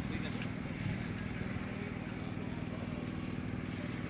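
Small engine of a portable fire pump running steadily at a constant speed, giving an even low hum.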